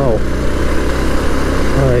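Motorcycle engine running steadily while being ridden, a low even hum with a broad hiss of wind and road noise over it.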